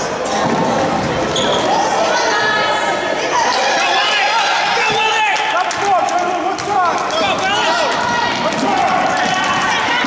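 Basketball bouncing on a hardwood gym floor during play, with spectators' overlapping talking and shouting throughout.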